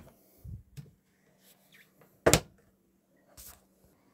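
Caravan fridge door being pushed shut: a soft thud about half a second in, then a single sharp knock a little after two seconds.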